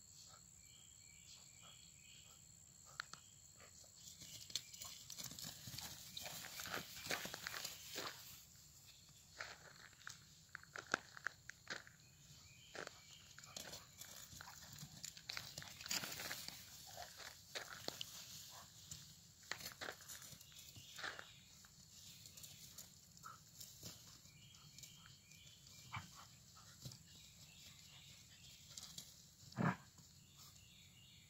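Two dogs at play in grass: scattered rustling, scuffling and knocks, busiest through the middle, with crickets chirping steadily in the background.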